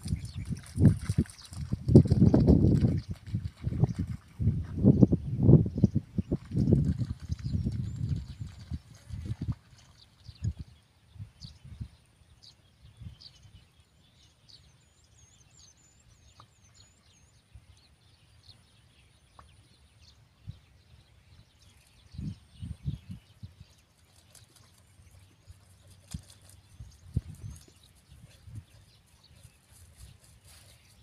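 Outdoor field ambience. Heavy, irregular low rumbling on the microphone fills the first ten seconds or so, then it goes quieter, with a few faint high bird chirps about halfway through and more low bumps a little after twenty seconds.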